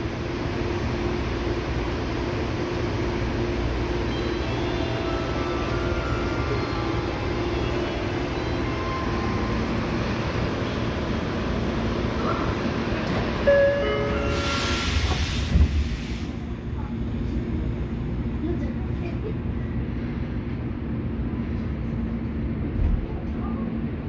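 A subway train standing at an underground station with its doors open: station hum, with short chime-like tones and announcements over it. About two thirds of the way through there is a hiss lasting a second or two as the doors close, after which the sound is duller, leaving a steady hum inside the car.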